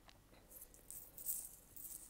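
Faint, high-pitched rustling in several short bursts, the loudest a little past the middle.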